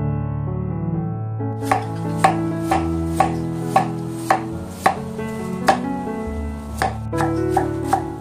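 Knife chopping a white root vegetable into thin strips on a wooden cutting board, about two chops a second starting a second and a half in, with a short pause near the end. Background music with held instrument notes plays throughout.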